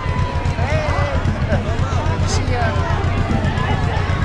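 Parade crowd talking and calling out all around, many overlapping voices with no clear words, over a steady low rumble.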